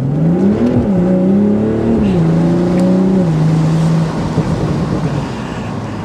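BMW Z4 M40i's turbocharged 3.0-litre inline-six accelerating hard, its exhaust note climbing in pitch and dropping back at upshifts about one and two seconds in. It then holds steady and eases off about four seconds in, leaving road noise.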